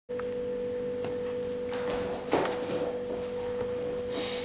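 A steady single-pitched hum over faint room noise, starting abruptly, with a brief soft knock or rustle about two and a half seconds in.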